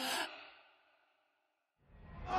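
A short, breathy exhale that fades away within about half a second, followed by near silence.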